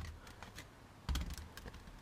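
A few light clicks and taps, with a soft knock about a second in, from plastic bottles of axle oil being handled and set down.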